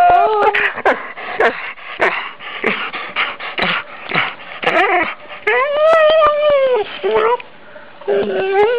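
A dog whining and howling. A held howl ends just after the start, then comes a run of short whines and yips, then a longer howl about six seconds in that rises and falls.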